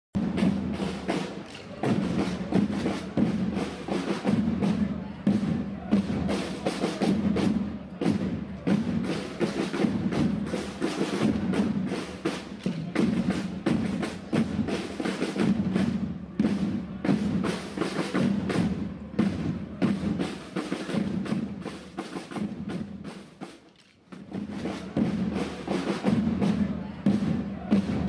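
Marching parade drums, snare and deeper drums together, beating a steady rhythm of rapid strokes. The drumming drops away almost to nothing for a moment near the end, then starts up again.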